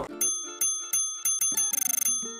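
A short musical sting: a series of bell dings that ring on over a few low, stepping notes, ending in a rapid bell trill like a bicycle bell being rung.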